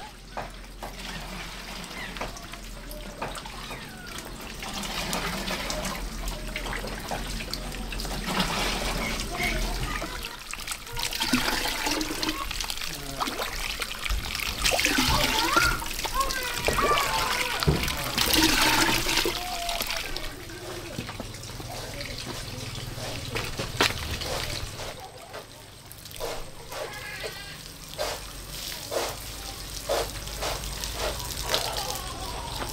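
Water poured from a bowl into a plastic watering can, splashing and trickling. Near the end, water sprinkling from the can's rose onto plants.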